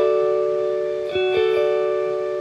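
Electric guitar picking a D major triad as an arpeggio, the notes left ringing together, with more notes struck about a second in and everything slowly fading.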